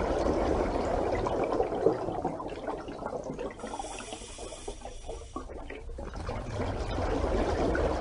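Water sound, a dense bubbling, splashing noise without a tune. It is quieter in the middle and swells again near the end.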